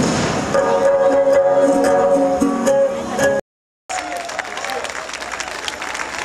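Huapango arribeño string band of violins and guitars playing, with long held notes over strummed chords. About three and a half seconds in the sound drops out for half a second, then audience applause and crowd noise with faint music follow.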